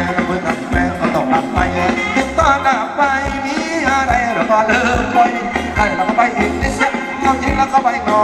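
Thai ramwong dance song played by a live band over loudspeakers, with a steady beat and a singer's voice carrying the melody.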